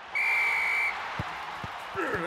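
A referee's whistle blows one steady, high-pitched blast of under a second to start play, followed by stadium crowd noise with two soft thuds.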